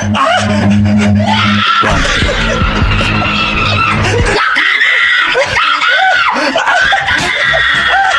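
A woman screaming in long, high-pitched held cries over background music with a heavy bass in the first half.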